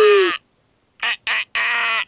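Cartoon bird's voice-acted call: three short calls at one steady pitch, the third held about half a second.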